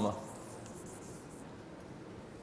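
Chalk faintly scratching on a blackboard as a word is written.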